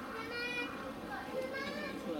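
Children's voices chattering and calling out, with other people talking in the background.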